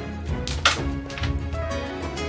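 Carrom striker flicked into the coins: a single sharp wooden clack a little over half a second in, over steady background music.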